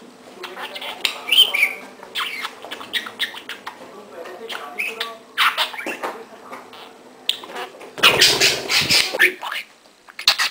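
Budgerigar chattering: a run of short chirps and warbles, with a louder, rougher burst about eight seconds in.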